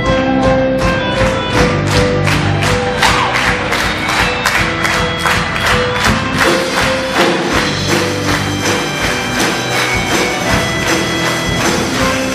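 Live band playing instrumental music, with held notes over a steady beat of tambourine-like strokes about four a second.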